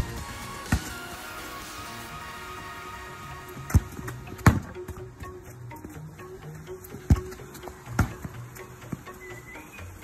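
A football being struck and touched with a boot on artificial turf, making about six sharp, irregularly spaced thuds over background music.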